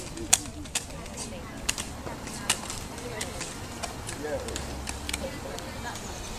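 Plastic toy lightsaber blades clacking together in an irregular series of sharp knocks, loudest in the first three seconds, with faint voices in the background.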